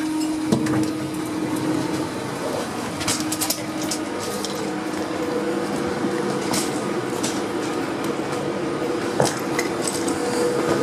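Steady hum of a Class 390 Pendolino electric train standing at a station platform, with scattered short clicks and clinks over it.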